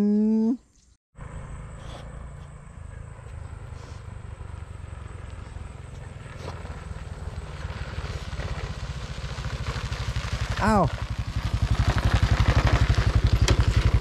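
A small motor scooter's engine approaching, growing steadily louder until it runs close by with a fast, even putter.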